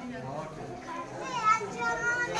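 A room full of children's voices chattering, with one high child's voice standing out in the second half, loudest about one and a half seconds in.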